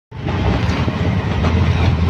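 Auto-rickshaw engine running with a steady low drone and rattle, heard from inside the open cabin while riding.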